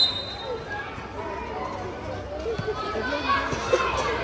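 Children talking and calling out in overlapping chatter, with a short high steady tone right at the start.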